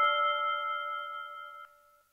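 Cherry Audio DCO-106 software synthesizer on its "Glass Arp" preset: the bell-like tones of the last arpeggiated notes ring on as a steady chord and fade out. The upper tones stop about three quarters of the way in, and the rest die away to silence by the end.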